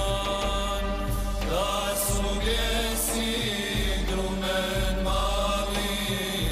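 Choir singing an Islamic devotional song in held, chant-like lines of several voices, over a deep bass layer that swells and drops every second or so.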